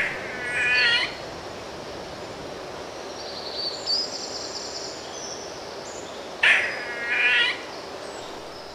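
Birds calling: a harsh call about a second long near the start and again about six and a half seconds in, with a thin high-pitched song in between, over steady background noise.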